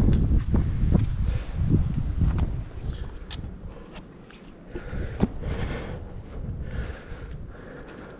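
A hiker's footsteps and scuffs while scrambling over rough rock, with scattered sharp clicks and scrapes. A loud low rumble fills the first few seconds, then fades.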